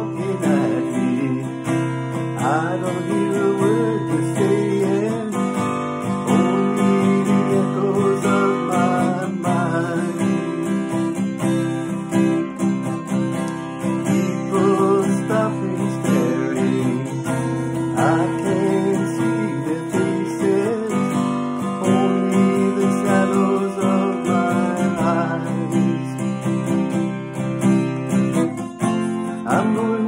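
Steel-string acoustic guitar strummed in a steady rhythm, with a man singing along over it.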